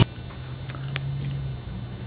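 Quiet room tone: a steady low hum with a few faint clicks.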